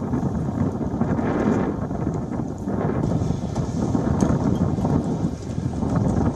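Wind buffeting an outdoor microphone: a loud, steady, deep rush with an uneven, gusting swell.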